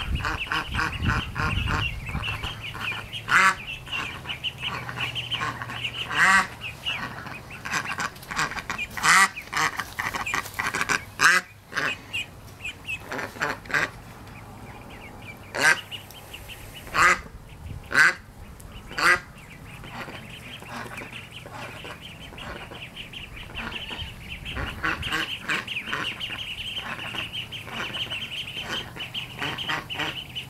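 A group of ducklings peeping rapidly and continuously, with louder quacks cutting in several times, a cluster of them between about 15 and 19 seconds in.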